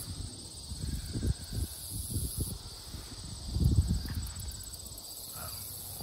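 Insects, crickets by the sound, trilling steadily in summer grass, with irregular low rumbles of wind and handling on the microphone, the strongest just before four seconds in.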